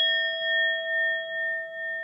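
A bell-like chime sound effect, struck just before and ringing on as a few clear tones with a slow wavering swell, about two a second, slowly dying away. It is the notification chime that goes with a subscribe-button animation.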